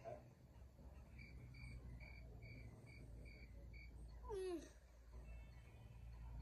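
Faint background with a low steady hum, over which a small animal gives a short series of about eight even, high chirps, roughly three a second, that stop after a few seconds. About four seconds in comes a brief falling sound.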